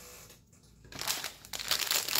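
Thin plastic bag crinkling as it is handled and opened, starting about halfway in and growing louder.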